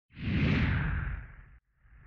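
Whoosh sound effect of an animated logo intro: a swell of rushing noise over a low rumble that fades out about a second and a half in. A second whoosh starts building just before the end.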